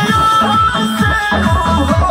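Loud music from a DJ truck's sound system: a high melody over deep bass beats that slide down in pitch, about three a second.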